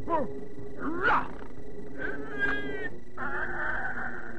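Cartoon sound effects: a string of short cries that glide up and down in pitch, animal-like or roar-like, followed by a rough, rasping stretch near the end.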